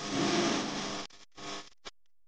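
Live worship band and singers heard as a dense, noisy wash that breaks off abruptly about a second in, comes back twice in short bursts, and cuts out just before the end: the stream's audio is dropping out.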